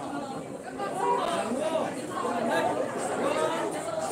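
Indistinct chatter of several people talking at once, no single voice standing out.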